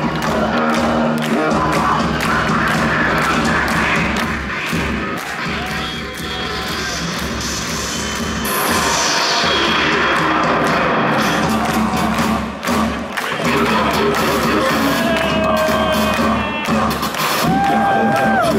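Rock band playing live and loud, with drums, electric guitar and keyboards, in an instrumental passage, recorded from amid the audience. A falling swoosh sweeps down about halfway through.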